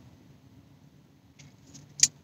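Very quiet car-cabin room tone: a faint steady low hum, with two faint short clicks in the second half.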